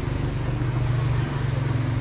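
An engine running steadily, with an even low hum.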